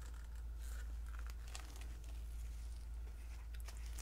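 Faint crinkling and a few small clicks from thin plastic cups handled in gloved hands, over a steady low hum.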